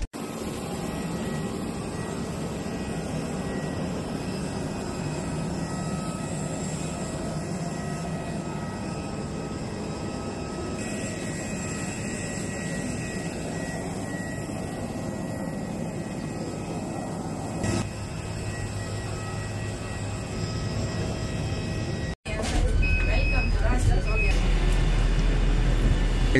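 Steady jet airliner noise: first a dull rumble in the cabin after landing, then outside beside the parked aircraft a steady engine whine with high thin tones. About four seconds before the end a louder low rumble takes over.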